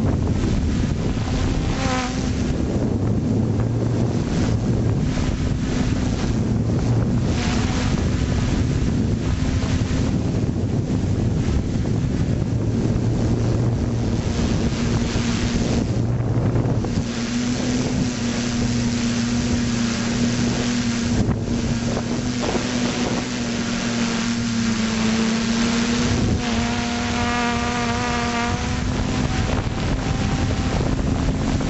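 Small FPV drone's electric motors and propellers running with a steady hum, heard through its onboard camera with wind buffeting the microphone. Near the end a second, higher whine joins for a few seconds.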